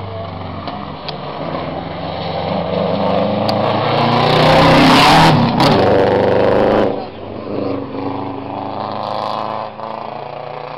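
Subaru Legacy 2.0 Turbo rally car's turbocharged flat-four engine revving hard as the car approaches and passes close, loudest around five seconds in. The sound drops off suddenly about seven seconds in, leaving a quieter engine further off.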